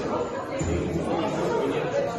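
Several people chattering at once in a large room, with no distinct words.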